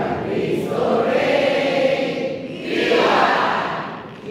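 A congregation of mixed voices singing a hymn together in sustained phrases, with a brief break in the singing near the end.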